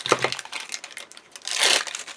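Double-sided foam tape being pulled and laid along cardstock, its paper backing crackling and rustling, with a short rip just after the start and a longer tearing rustle near the end.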